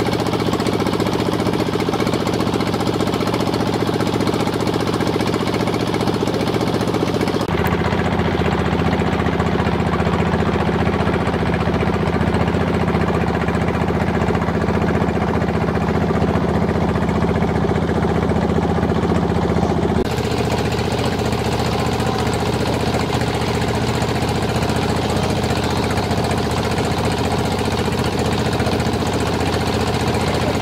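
Boat engine running steadily with a fast, even beat. Its tone changes abruptly twice, about a third and two thirds of the way through.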